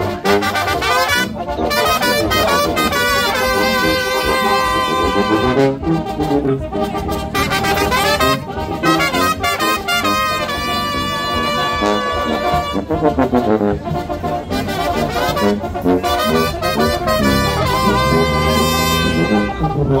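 A live brass band playing a tune in phrases, with held horn notes and short breaks between phrases.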